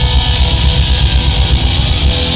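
Live heavy metal band playing loudly: electric guitars and bass over drums pounding rapidly in the low end.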